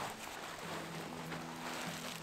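Faint rustling of a plastic trash compactor bag being pushed down into a backpack as a liner.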